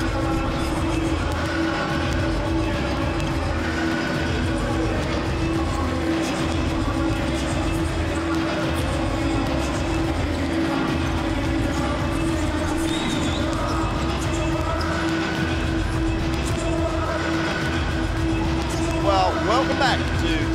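Arena music with a steady beat filling a large hall, with basketballs bouncing on a hardwood court as players shoot around in a warm-up.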